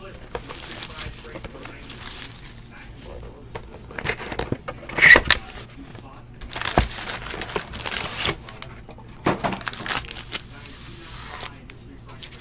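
Crinkling and rustling of foil trading-card packs and their plastic wrapping being handled and stacked, with a sharper, louder crinkle about five seconds in.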